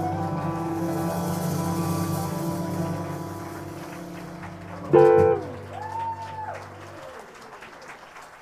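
A jazz quartet of electric archtop guitar, piano, upright bass and drums lets the closing chord of a slow ballad ring and fade. About five seconds in, a louder guitar figure sounds, and then the last notes stop shortly before the end.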